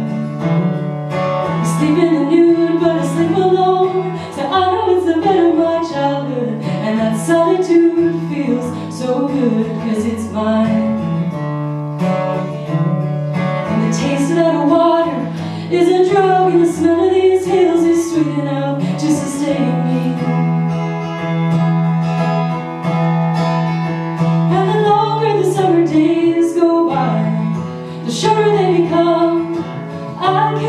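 A woman singing a folk song while strumming an acoustic guitar, with the voice's melody rising and falling over steady low guitar notes.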